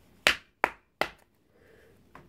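Three sharp slaps in quick succession, a little under half a second apart, from hands working a deck of tarot cards.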